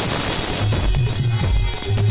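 Loud band music from a live musical group, with a heavy, pulsing bass beat.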